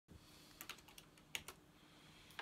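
Faint scattered clicks over near-silent room tone: a few light taps, two pairs about three-quarters of a second apart.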